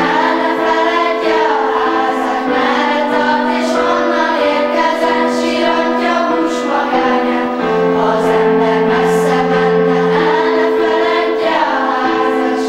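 A children's choir of schoolgirls singing together, with long held notes.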